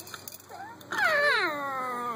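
A loud, long, high wail that starts about a second in and glides steadily down in pitch, still going at the end.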